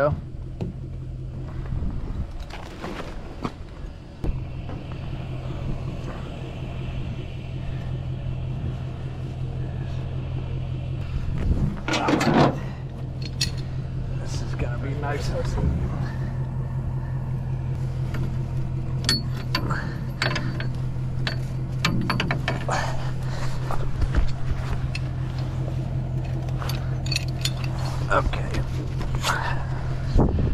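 A steady low hum throughout, with scattered sharp metallic clicks, knocks and scrapes from hand tools working on the old car's trim and bumper.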